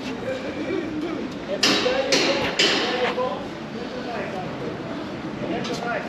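Indistinct voices of people nearby, with three sharp clinks about two seconds in.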